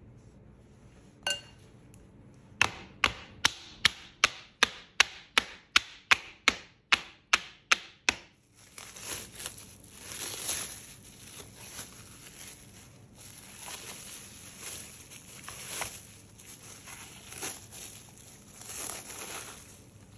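A run of about fifteen sharp, evenly spaced knocks, a little under three a second, that stops after about five seconds. Then plastic cling film crinkles and rustles as hands press it over a slab of chocolate cookie dough and peel it away.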